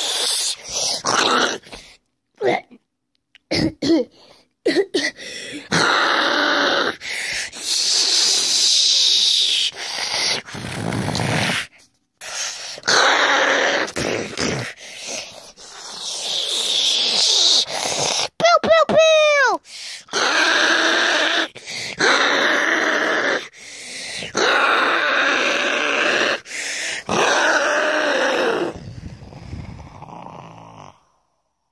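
A child's voice making monster roars and growls in short, abrupt bursts, with a falling squeal about two-thirds through.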